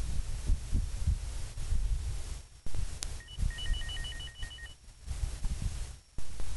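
Gusty wind rumbling on the microphone. About three seconds in comes a click, then a quick run of short high beeps that alternate between two pitches for about a second and a half.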